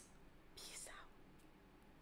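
Near silence: a short click at the very start, then one faint whisper from a woman about half a second in, over low room hum.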